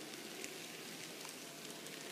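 Faint steady rustle with a few light clicks: the wheels of N scale tank cars rolling along model track.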